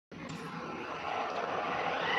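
The sound cuts out completely for a moment, then comes back as a steady rushing noise that slowly grows louder.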